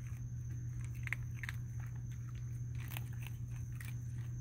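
Raccoon drinking at a water tub, making scattered small wet clicks and smacks with its mouth at the water.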